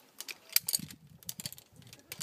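Metal zipline hardware clinking: several sharp, irregular clicks of carabiners and clips knocking together.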